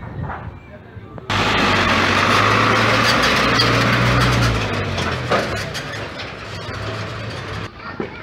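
A cargo truck's engine running close by with a steady low drone and road noise, starting loud about a second in, easing off past the middle and cutting off just before the end.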